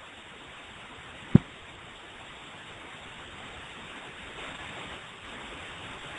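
Steady background hiss from the microphone, with one short thump about a second in.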